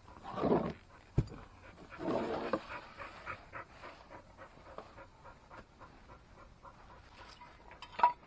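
Two heavy, breathy huffs from a man working on his knees, with a single sharp knock about a second in as he handles a steel jack stand, then faint small clicks.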